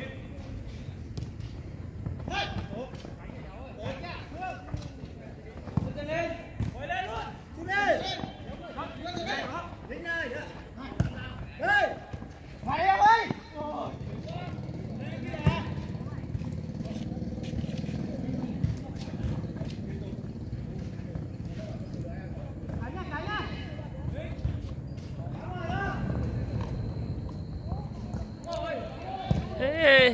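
Football players shouting and calling to each other across the pitch during a small-sided match, with a few thuds of the ball being kicked. A steady low rumble sets in about halfway through.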